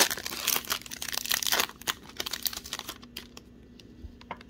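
A foil trading-card pack wrapper being torn open and crinkled in the hands: dense crinkling for about the first two seconds, thinning to a few scattered ticks as the wrapper is peeled away.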